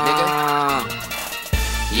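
Hip-hop track: a long, held vocal note fades out about a second in, and the beat drops back in with heavy bass near the end.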